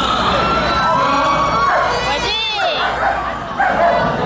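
A dog gives a single short, high yelp about halfway through, over steady crowd chatter.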